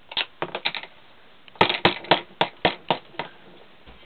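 A child's toy rolling pin knocking on a plastic play table: a few scattered sharp taps, then from about one and a half seconds in a steadier run of about four knocks a second that fades out before the end.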